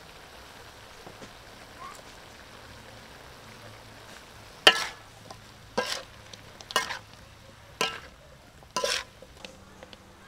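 Frog and bell pepper stir-frying in a metal wok: a faint steady sizzle, then, from about halfway through, five sharp strokes of the spatula scraping and knocking against the wok, about one a second.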